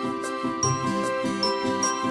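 Background music: a light, tinkly tune with a steady beat and a few high chiming, bell-like notes.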